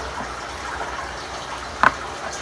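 Steady rush of water circulating in an aquarium, with one short sharp click near the end.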